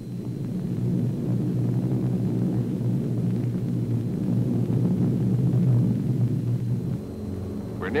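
Steady low drone of C-47 transport planes' twin radial piston engines in flight, easing off in level near the end.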